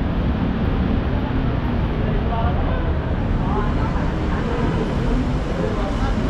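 Steady city street traffic noise with indistinct voices of people mixed in.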